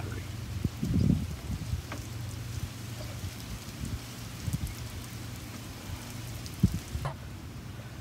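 Faint small clicks and rustles of hands working electrical wires and connectors, over a steady low background hum, with a brief low rumble about a second in.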